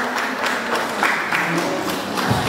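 Audience applauding, a dense patter of many hands clapping, with a few voices mixed in.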